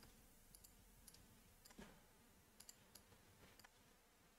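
Near silence broken by a few faint, scattered computer mouse clicks.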